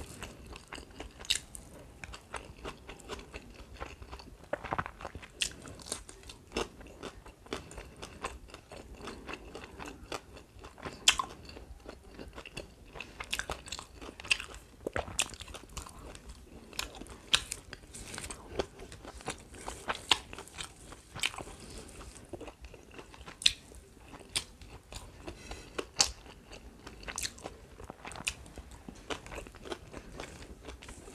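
Close-miked chewing and crunching of rice and fried food eaten by hand, with many irregular sharp crunches throughout.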